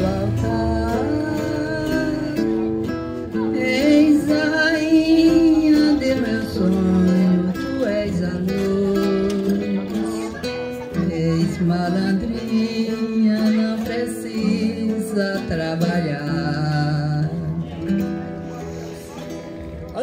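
An elderly woman singing a slow ballad into a microphone, accompanied by an acoustic guitar. The music eases off near the end.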